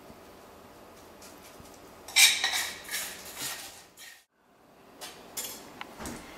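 A utensil clinking and scraping against a stainless steel mixing bowl while crunchy topping is scooped out, in a loud cluster of clatter about two seconds in. After a brief break in the sound, a few fainter knocks.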